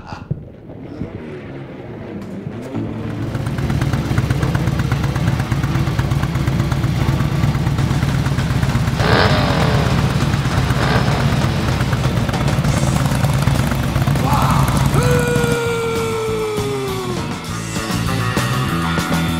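A motorcycle engine running steadily under a music soundtrack, growing louder over the first few seconds. A sharp burst comes about nine seconds in, and downward-gliding whistling tones follow near the end.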